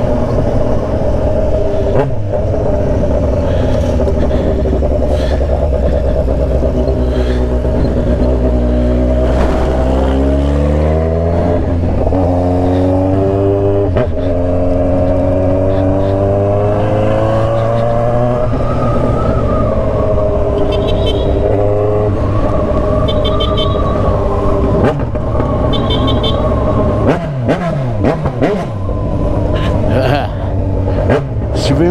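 Kawasaki Z900RS inline-four engine heard from the rider's seat while riding in traffic. Its note falls as the bike slows about eight seconds in, then climbs as it accelerates and settles into a steady run, rising once more a little past halfway.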